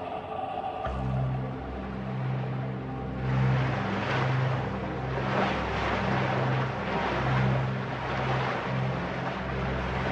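Background music: a low, pulsing bass line comes in about a second in, under washes of noise that swell and fade.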